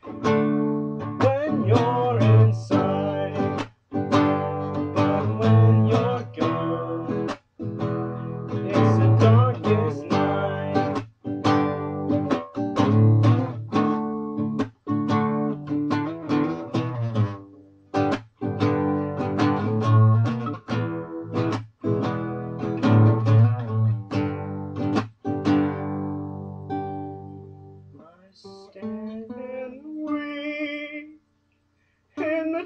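Nylon-string classical guitar strummed in a repeating chord pattern, with a brief stop every few seconds. The strumming thins out near the end.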